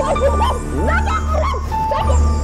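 A woman screaming incoherently, her voice sliding up and down in pitch, over background music with a steady low bass.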